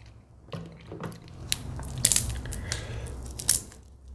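Close-miked eating of boiled crab: wet chewing and squishing with short sharp clicks and crackles, the loudest about two seconds in and again shortly before the end.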